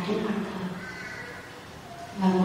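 A woman's voice through a handheld microphone trailing off, then a brief, quieter high-pitched vocal sound about a second in before a short pause.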